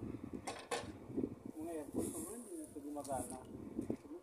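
Voices talking, with two short sharp knocks about half a second in.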